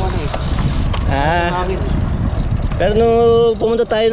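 Wind buffeting the microphone of a camera riding along on a moving road bike, a dense low rumble. A voice sings a bending phrase about a second in, then a loud drawn-out note near the end.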